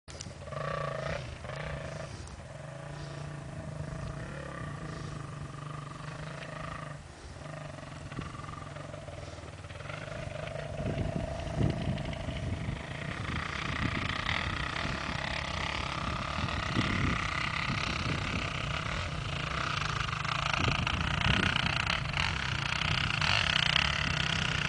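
Dirt bike engines heard from a distance: a steady drone at first, then rougher and louder from about ten seconds in as a bike comes nearer.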